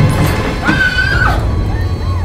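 Horror-trailer score: a low rumbling drone with a thud at the start, and a single high, drawn-out cry that rises, holds for about two-thirds of a second and then drops away.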